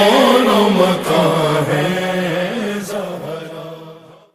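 Man singing an Urdu devotional song (manqabat), holding and bending a slow melodic line that fades out near the end.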